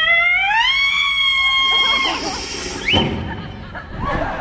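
A woman's high singing voice slides up to a very high note, holds it steadily and cuts off about two seconds in. A hiss and a jumble of noise follow, with a brief rising squeak near the end.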